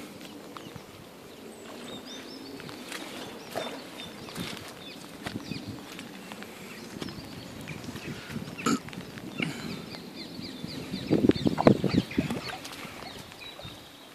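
A hooked rainbow trout splashing and thrashing at the surface close to the bank, over a steady patter of rain on the water, with a louder, rougher spell of splashing about two seconds before the end.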